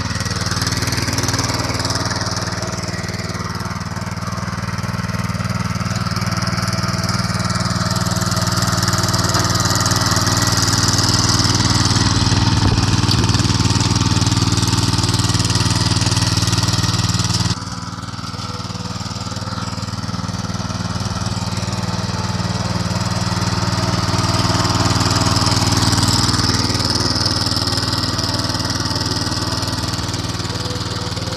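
Mini tiller's 5.5 hp single-cylinder four-stroke petrol engine running steadily as its tines work the soil. The level swells and eases slowly and drops suddenly a little over halfway through.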